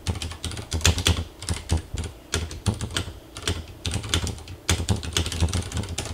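Typing on a computer keyboard: a fast, irregular run of keystroke clicks with brief pauses between bursts.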